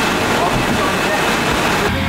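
Steady rushing din of a large distribution warehouse, with its conveyor machinery and air handling running, and faint voices under it.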